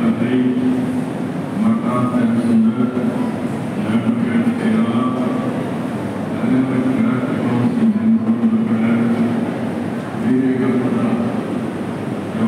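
A man giving a speech through public-address loudspeakers, his voice amplified over a steady background haze.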